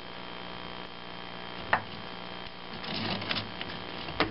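Hands working the knotted nylon starter cord back into a plastic recoil-starter pulley: one sharp click a little before halfway, and a few light clicks and scratches near the end, over a steady low electrical hum.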